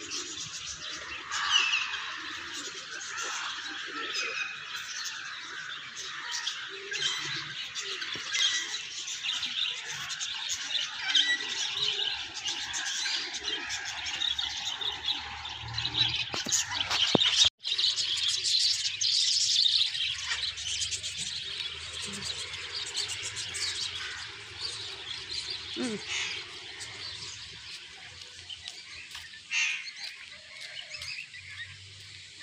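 A dense chorus of many caged birds chirping and squawking together without pause, with a brief sudden dropout about seventeen seconds in.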